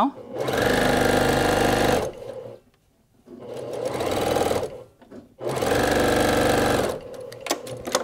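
Electric domestic sewing machine stitching a seam through layered cotton quilt pieces in three steady runs with brief stops between them, the middle run quieter. A few light clicks follow the last run near the end.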